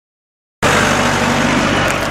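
Engine of a Mercedes-Benz Sprinter minibus running steadily close by, under a loud rushing noise. The sound cuts in abruptly about half a second in.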